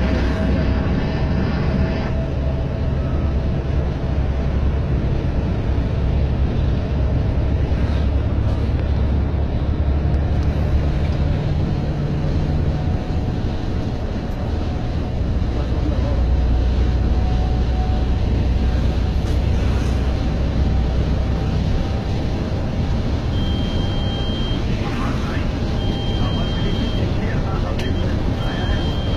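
Coach's diesel engine and road noise heard from inside the cab while driving, a steady low rumble. Two short high beeps sound near the end.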